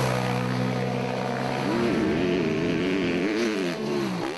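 Motorcycle engine running at a steady idle, then revved up and down repeatedly from about halfway.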